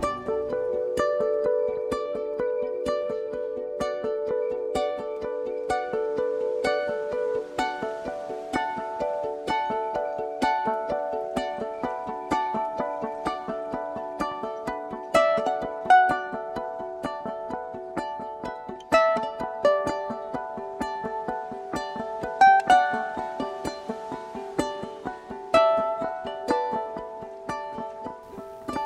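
Background music: a plucked string instrument picking a steady, busy melody of separate notes.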